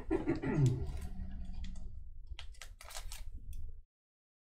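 A man coughs near the start, then a few scattered light clicks follow over a low background hum; the sound cuts out completely just before the end.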